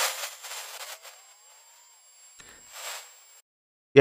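High-altitude balloon infrasound recording, sped up so it can be heard, playing back as a hiss that fades with a faint rising whine under it. A second short burst of hiss comes near the end, then it cuts off.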